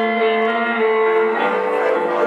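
Live electric guitar playing long sustained notes through an amplifier, moving to a new note about one and a half seconds in.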